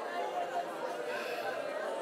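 A congregation's many voices praying aloud at once: a steady murmur of overlapping speech with no single voice standing out.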